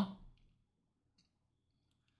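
A spoken word ends at the very start, then near silence with a couple of faint, small clicks.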